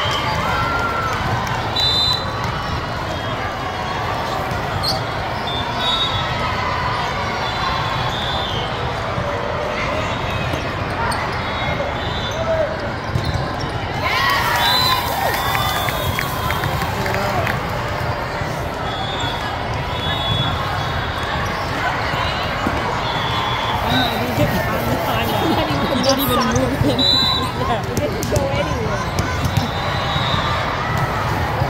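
Volleyball hall ambience: thuds of volleyballs being hit and bouncing over a steady babble of many voices, with short high squeaks scattered through. The voices rise about fourteen seconds in, as a rally ends.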